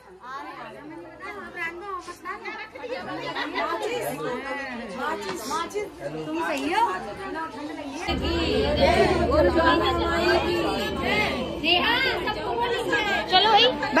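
Many people talking over one another, several voices at once. About eight seconds in the talk gets louder and a low rumble joins it.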